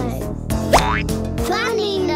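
Children's background music with a quick rising cartoon 'boing' sound effect under a second in, then a sung or spoken voice sliding in pitch near the end.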